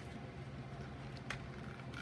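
Quiet room tone with a steady low hum and two faint clicks from stamping supplies being handled on the desk.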